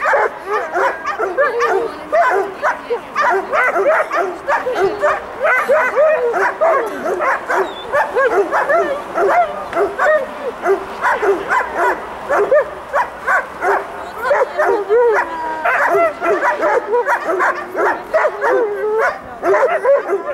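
German shepherd barking without a break in rapid, excited barks with yips and whines between them, at the decoy during protection training.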